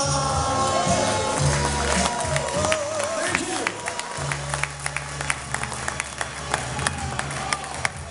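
A small audience clapping as the song ends, over the closing bars of the singer's backing music.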